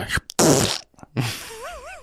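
A man imitating a wet slap with his mouth: a loud spluttering burst, then a softer rush of breath. A wavering whistle-like tone starts about a second and a half in.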